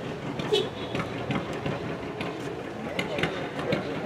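Faint background voices over a steady low engine hum, like an engine idling.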